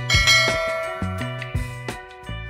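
Background music: a bell-like chord struck just after the start rings and slowly fades, over a bass line and a few drum beats.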